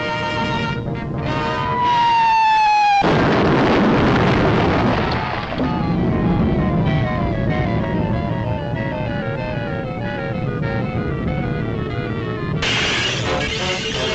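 Orchestral cartoon score: a held note slides down, then a loud explosion-like crash breaks in about three seconds in and dies away over a couple of seconds. Repeated falling runs follow, and a louder, brassier passage comes in near the end.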